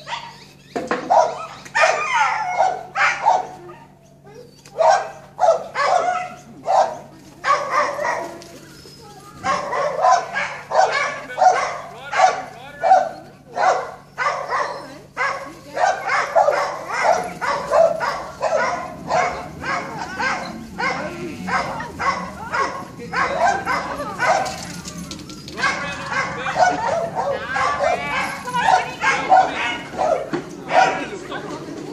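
Kelpie sheepdog barking over and over in short, sharp barks, about one or two a second with brief pauses, as it drives a mob of sheep.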